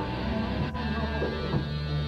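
Live rock band playing an instrumental passage: electric guitar and bass holding chords over drums, with a sharp drum hit about a third of the way in. The recording is dull, with little treble.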